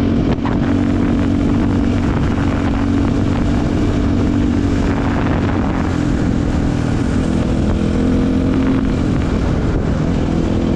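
Dirt bike engine running steadily at cruising speed, heard from the bike itself, under a steady hiss of wind and tyres on gravel.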